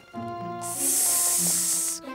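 A cartoon python's hiss: a long, loud, high hiss that starts a little under a second in and cuts off suddenly. Under it is background music with held notes.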